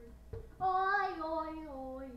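A high voice sings one long held note, starting about half a second in and sliding slowly downward in pitch, made as noise for a noise-meter game.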